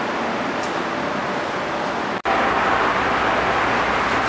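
Steady rushing background noise with no distinct pitch. It drops out for an instant a little past halfway, then carries on.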